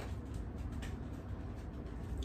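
Quiet kitchen room tone: a steady low hum with a few faint soft clicks.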